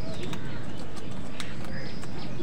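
Birds at a feeding spot chirping in short, high calls over a steady low background rumble, with a few sharp clicks; the loudest click comes about a second and a half in.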